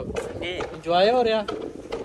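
A person's voice: one drawn-out vocal sound that rises and falls in pitch, about a second in, over a faint steady hum.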